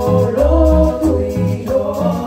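Live concert music through a large outdoor sound system, heard from far out in the audience: a man singing a held melody over a band with a steady beat and deep bass notes.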